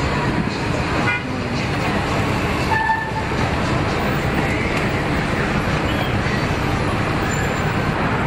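Steady traffic and wind noise around an open-top double-decker tour bus moving through city streets, with a couple of short horn toots in the first three seconds.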